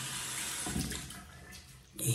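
Water running from a tap into a bathroom sink while a face is washed, dying away near the end.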